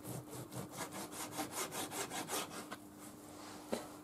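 Kitchen knife sawing back and forth through raw pork tenderloin on a plastic cutting board, a quick, even run of soft strokes that stops about three seconds in. A single light knock follows near the end.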